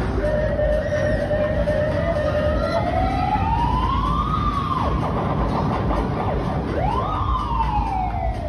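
Siren wail from a fairground ride's sound show. The tone climbs slowly for about four seconds and drops away, then shoots up again near the end and slides back down, over a steady rumble of ride noise.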